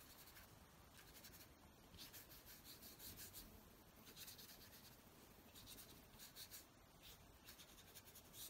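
Very faint soft swishing of a small flat watercolour brush stroking wet paint across watercolour paper, in a few gentle passes.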